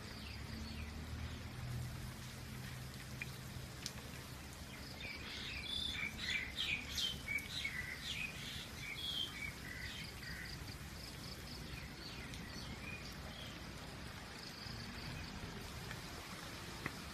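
Steady rain falling, with small birds chirping in quick bursts for several seconds in the middle.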